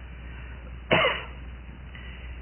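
A single short cough about a second in, over the steady low hum of an old recording.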